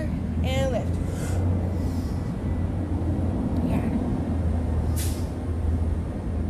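Steady low rumble of outdoor vehicle noise, with a brief sharp hiss about five seconds in.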